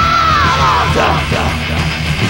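Heavy metal band playing a lo-fi 1985 practice-room demo. A high held note with a wide, regular vibrato slides downward about half a second in, over the full band.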